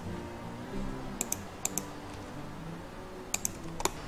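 Sparse clicks from a computer keyboard and mouse, mostly in quick pairs, as a CAD drawing is being edited.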